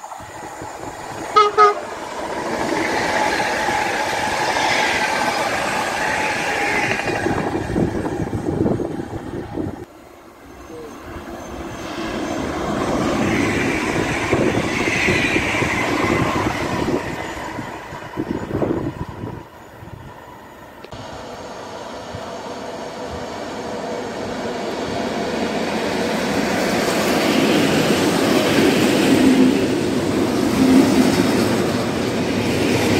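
A short double horn toot from an approaching PKP Intercity ED160 (Stadler FLIRT) electric multiple unit. Then two ED160 trains pass at speed one after another, each rising and falling. Near the end an EN57AKM electric multiple unit pulls in alongside the platform, growing steadily louder.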